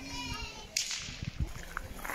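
A sudden sharp, crack-like noise about three-quarters of a second in, fading quickly, after a brief high-pitched call at the start, over outdoor background sound.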